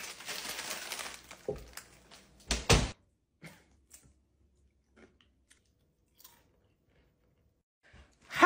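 Rustling of food packaging for the first second and a half, then a couple of loud knocks about two and a half seconds in. After that come sparse, faint crunches of tortilla chips being eaten from a crinkly chip bag.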